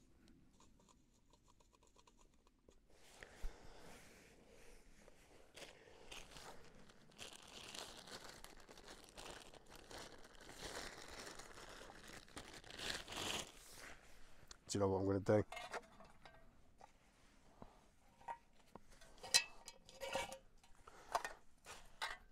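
A thin stuff sack being handled, crinkling and rustling for about ten seconds, followed later by a few light clicks.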